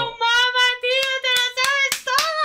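A woman's voice holding one long high sung note, almost steady in pitch. A few hand claps come in near the end.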